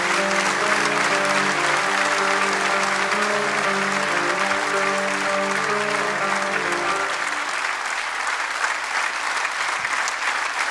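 Large theatre audience applauding over the music's final sustained notes; the music stops about seven seconds in and the applause carries on alone.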